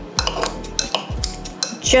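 Kitchen scissors snipping braised pork belly into small chunks in a glazed ceramic bowl, with metal tongs clicking against the bowl: a quick, uneven series of sharp snips and clinks.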